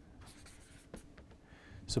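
A marker pen writing in short strokes on a white board: faint, soft scratching as a few letters are drawn.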